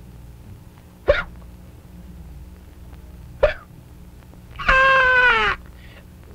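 A puppeteer's wordless character noises for a puppet: a short rising squeak about a second in, another about three and a half seconds in, then a longer whining cry near the end that drops in pitch as it stops.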